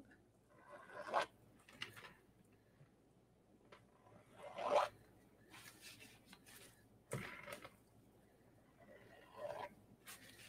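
A few short, faint scrapes and rustles from a wet painted canvas being handled and turned on a plastic-covered work table.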